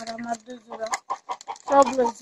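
Chickens clucking in a string of short calls, mixed with a woman's voice.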